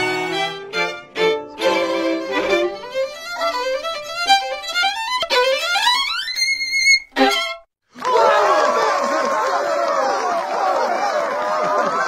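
A string group of violins and cello playing, then a violin solo running up in fast rising scales and slides to a high held note about six to seven seconds in. After a brief break near eight seconds, a dense jumble of many overlapping wavering pitches fills the last few seconds.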